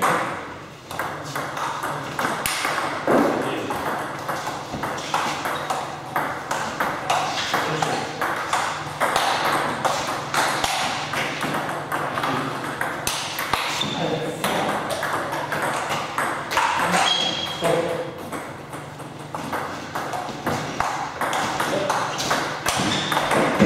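Table tennis ball being struck back and forth: quick runs of sharp clicks as it hits the rackets and bounces on the table, repeating throughout with short breaks between points.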